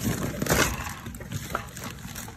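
Handling noises: rustling and knocking of bags and stored items being moved about, loudest in the first half-second or so, with a shorter burst about a second and a half in.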